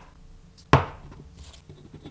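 A single sharp knock about three-quarters of a second in, as a precision potentiometer is set down on the hard work surface, followed by a few faint handling clicks.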